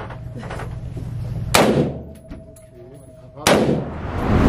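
Two gunshots about two seconds apart, each a sharp crack followed by a short echoing tail in an indoor shooting range.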